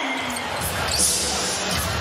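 Basketball arena crowd noise with a basketball being dribbled on the hardwood court. The sound changes abruptly about halfway through, getting brighter and briefly louder.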